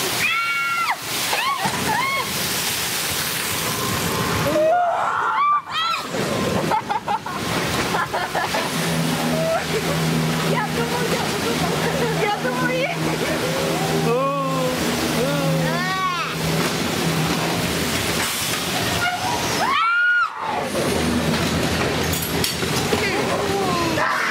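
Rushing, sloshing water on a dark ride, under repeated rising-and-falling shrieks and laughter from the riders. A steady low drone joins in from about nine seconds in and fades out near eighteen seconds.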